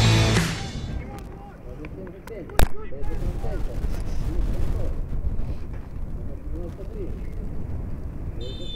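The tail of a short music sting fades out in the first half-second, followed by a sharp click. Then there is open-air football pitch ambience: a steady low rumble with faint, distant shouts from players on the field.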